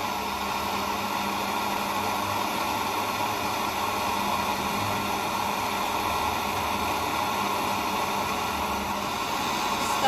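GoSystem Fine-Tech handheld gas torch burning steadily with a continuous hissing rush as it melts silver scrap in a crucible. A low steady hum runs under it and stops near the end.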